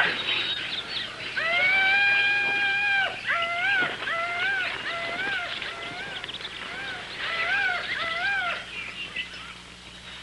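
An animal calling: one long held cry, then a run of short rising-and-falling calls, about two a second.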